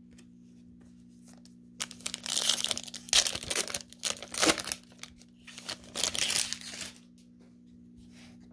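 A foil trading-card pack wrapper being torn open and crinkled by hand: a run of loud crackling bursts starting about two seconds in and stopping about a second before the end.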